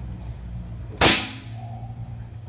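Greyhound Classic PCP air rifle fired once: a single sharp blast about a second in, fading within half a second.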